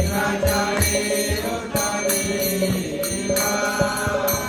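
Devotional mantra chanting: a voice sings a Sanskrit prayer to a slow melody, with small hand cymbals (karatalas) struck in a steady rhythm and low drum beats underneath.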